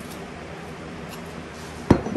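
A small lidded salt cellar being handled on a stone countertop: faint room background, then one sharp knock near the end as the wooden spoon and lid are put back.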